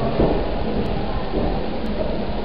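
Steady low rumble and hiss of room noise on a poor recording, with no speech.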